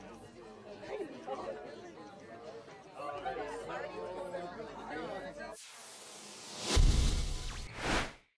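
Overlapping chatter of a crowd of voices. About five and a half seconds in it cuts off abruptly, and a rising whoosh swells into a loud deep boom, with a second hit just before the end.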